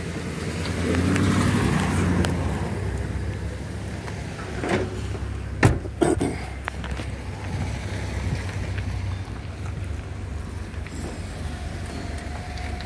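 Steady low motor-vehicle rumble that swells and fades over the first two seconds, with a car door shutting in a sharp thud about halfway through and a second, lighter knock just after.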